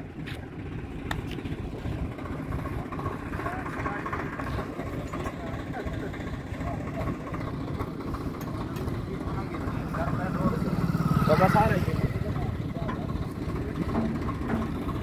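Tractor diesel engine idling steadily, with voices in the background.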